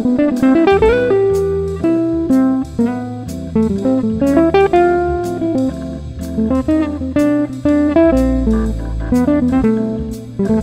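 Jazz organ trio: a hollow-body archtop electric guitar solos in quick single-note lines over a low organ bass line, with drums keeping time throughout.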